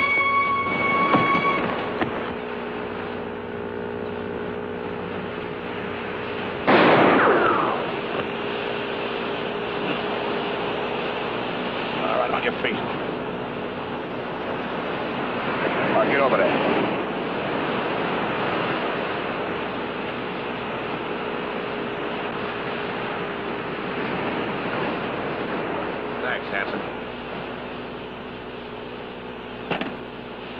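A steady engine drone at one unchanging pitch, with a loud sudden burst about seven seconds in and several swells of rushing noise later on.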